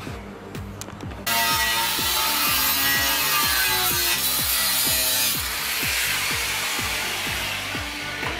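A power tool cutting an aluminium chequer plate, starting about a second in and then running loud and steady, over background music with a steady beat.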